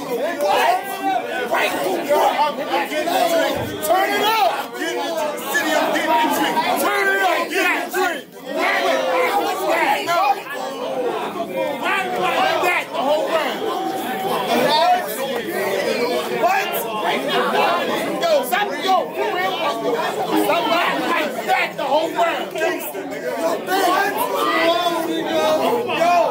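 A crowd of men talking and calling out over one another in a large room, a steady babble of overlapping voices with a brief lull about eight seconds in.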